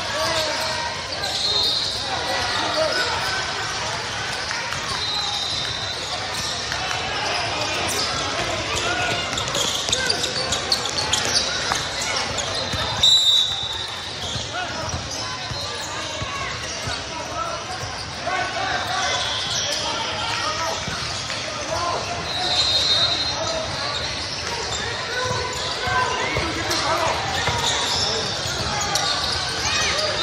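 Basketball game sounds in a large echoing hall: a ball being dribbled on a plastic-tile sport court, with indistinct voices of players and spectators and short high squeaks now and then.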